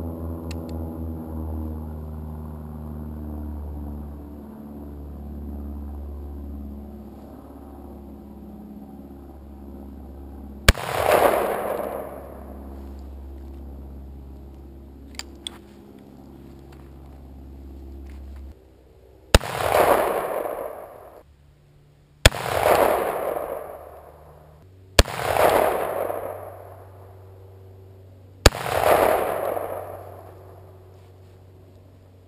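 Five shots from a Robinson Armament XCR-M semi-automatic rifle, each trailed by a long echo: one about 11 seconds in, then four more about 3 seconds apart near the end. A steady low hum sits under the first two-thirds and stops about 18 seconds in.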